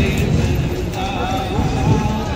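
Horses' hooves clip-clopping on a paved street, mixed with loud voices and music.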